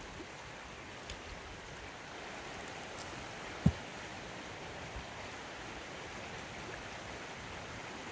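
Steady rushing of the Pigeon River flowing close by, with one sharp knock about three and a half seconds in.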